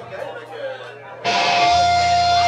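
Low crowd chatter, then about a second in an electric guitar and bass cut in loudly through their amplifiers, holding one ringing note.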